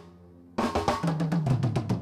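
Rock drum kit fill: after the last hit rings out and a short pause, a fast run of snare and tom strokes starts about half a second in, about ten a second, leading the band back in.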